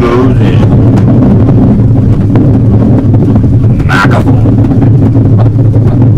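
Loud improvised noise music: a dense, steady low drone with a harsh haze over it, and a brief higher-pitched burst about four seconds in.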